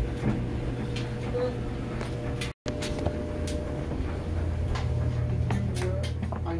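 Steady hum of a running clothes dryer, with scattered light clicks and knocks. The sound drops out for an instant about two and a half seconds in.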